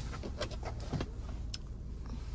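Steady low hum inside a stationary car's cabin, with a few faint clicks about half a second, one second and one and a half seconds in.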